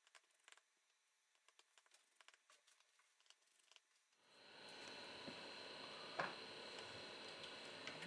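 Near silence: faint room tone that comes in about four seconds in, with one faint click about six seconds in.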